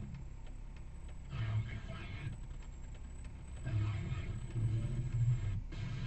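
Steady low rumble inside a car's cabin while it sits idling at a standstill, with two muffled stretches of a voice from the car radio, one about a second in and a longer one past the middle.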